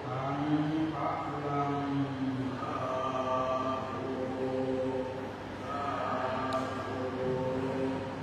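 Buddhist chanting by low voices: long held notes that step between a few pitches.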